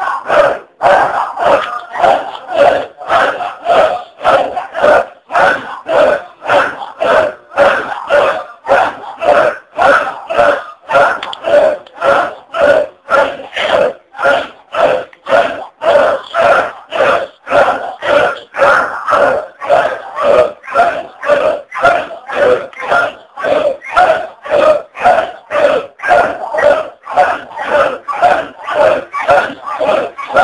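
A crowd of men chanting in unison, one short repeated devotional phrase after another in a fast, steady rhythm with a brief break between each chant.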